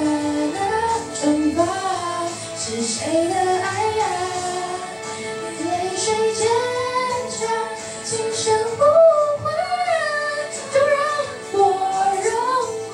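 A young woman singing a slow Mandarin pop ballad into a handheld microphone over a backing track, her voice gliding between held notes.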